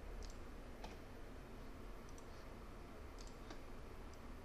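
A few faint computer mouse clicks, some in quick pairs, spread over a few seconds.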